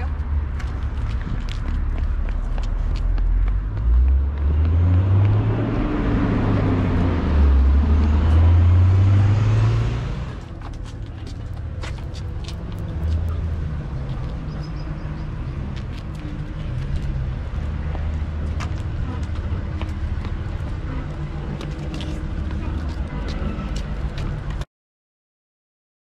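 Street traffic: a motor vehicle's engine passes close by, loudest in the first half, its pitch rising and falling. After about ten seconds it gives way to quieter street noise with scattered light ticks.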